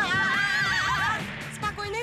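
Two cartoon girls' voices screaming together in fright, high and wavering, for a little over a second, over background music.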